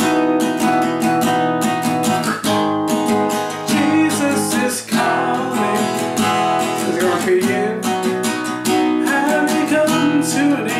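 Steel-string acoustic guitar strummed in a steady rhythm, playing the verse progression in B major without a capo: B major, B major over E, G-sharp minor, E major.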